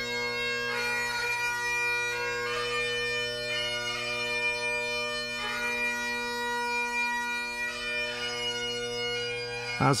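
A solo Great Highland bagpipe playing a slow lament: steady drones under a melody that steps from note to note. A narrator's voice comes in at the very end.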